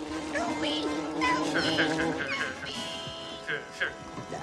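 Film soundtrack playing through the TV: a small, high, squeaky voice crying "Help me! Help me!" over a sustained music drone, then a man laughing briefly a couple of seconds in.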